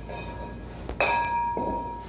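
Empty metal fire extinguisher cylinders clinking against each other. A sharp metallic knock about a second in leaves the hollow cylinder ringing on with a clear, bell-like tone that slowly fades.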